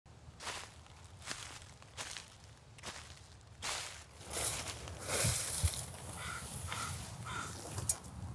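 Footsteps crunching through a thick layer of dry fallen leaves, about one step every 0.8 s, then a louder, more continuous rustle about halfway through.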